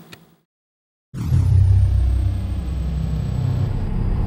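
Deep, steady rumble sound effect of an end-card sting, starting suddenly about a second in after a moment of dead silence, with a thin high whistle gliding downward as it begins.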